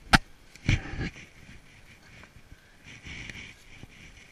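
A sharp knock, then a short clatter of knocks about half a second later, from handling around the ATV's bare frame and plastic bodywork with the seat off. Fainter scuffing follows.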